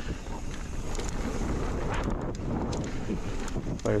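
Wind buffeting a GoPro's microphone as a mountain bike rolls down a dirt trail, with tyre noise and many small clicks and rattles from the bike over the rough ground.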